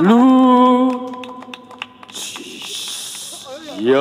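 A singer scoops up into a long held closing note of a song and lets it fade about a second in. After a quieter lull with a brief high hiss, a voice slides up into another held note near the end.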